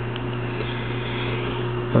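Steady low electrical hum with an even hiss over it: room and equipment background noise.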